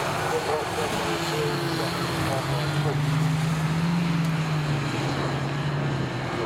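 Autograss racing cars' engines running on the dirt track, a steady engine note that rises a little about halfway through and then falls again as the cars pass and move away.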